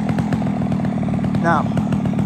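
Two-stroke chainsaw running steadily at an even engine speed.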